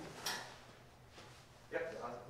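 A single short clack about a quarter second in, then quiet room tone, and a brief spoken "yep" near the end.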